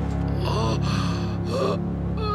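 An injured man gasping for breath, two short strained gasps about a second apart, over steady background music.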